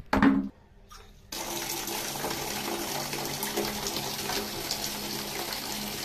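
A short knock at the start, then about a second later a tap turned on, water running steadily and hard into a bucket.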